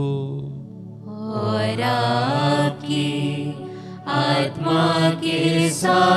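Chant-like liturgical singing, most likely the choir's sung response to the priest's opening greeting at Mass. A held note fades out in the first second, then voices sing in short phrases with small pauses between them.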